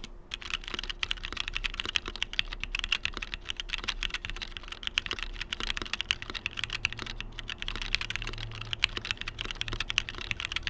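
Typing on an XD84 75% mechanical keyboard in a top-mount aluminium case: a fast, continuous stream of key clicks and bottom-outs, with a brief pause at the very start.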